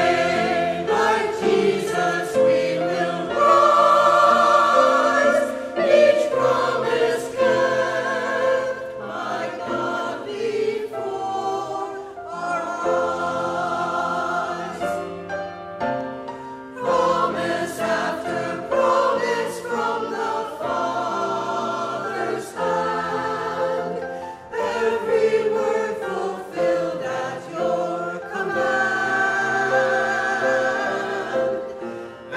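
Mixed church choir of women's and men's voices singing an anthem from their music folders, sustained sung notes moving from chord to chord.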